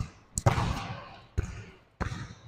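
Basketball being dribbled on an indoor gym court: a few separate bounces, the clearest about half a second and a second and a half in, each ringing on in the large hall.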